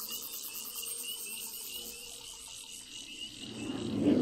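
Nature soundtrack of a Dolby Atmos demo clip: insects chirping in a fast, even rhythm, with a low swell building and growing loud near the end.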